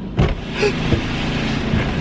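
A car door being opened, with a sharp latch click about a fifth of a second in, then a knock and shuffling as a passenger climbs into the seat, over the car's steady low hum.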